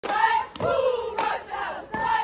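A cheerleading squad shouting a cheer together, broken by three sharp hand claps.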